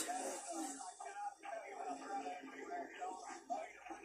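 Faint race broadcast sound from a television across a small room: a commentator's voice with some music underneath.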